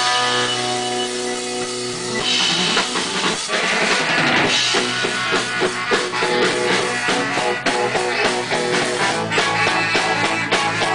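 Live rock band playing amplified: a chord rings out for about two seconds, then the drum kit comes in with a steady beat under electric guitars, bass and a baritone saxophone.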